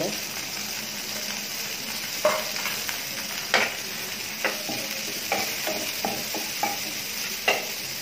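Sliced onions sizzling steadily in hot oil in a frying pan while a spatula stirs them. From about two seconds in, the spatula scrapes and knocks against the pan several times, most sharply about three and a half seconds in and near the end.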